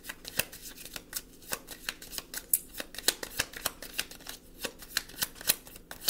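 Tarot deck being shuffled by hand: a run of sharp card clicks, several a second, irregularly spaced.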